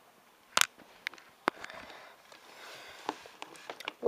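Small plastic toy figurines being handled and set down on a wooden desk: a few sharp clicks and knocks, the loudest about half a second in, with soft rustling between them.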